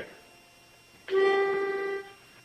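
A pitch pipe blown once, giving one steady held note that starts about a second in: the starting pitch for a barbershop quartet.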